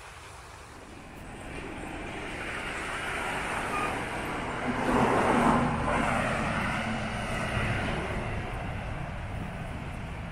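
A Jeep Cherokee SUV driving past on the street, its engine and tyre noise building over several seconds, loudest about halfway through, then slowly fading.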